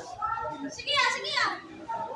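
People's voices chattering around the pool table, with a child's high-pitched voice the loudest thing, about a second in.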